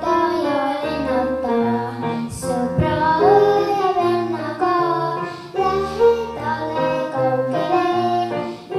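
A young girl singing a children's song into a microphone over a recorded backing track with a steady bass line.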